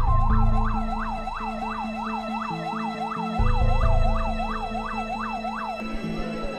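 Dark background music: a siren-like swooping tone of about three sweeps a second over held chords, with deep bass notes coming in at the start and again about halfway through. The swooping stops just before the end.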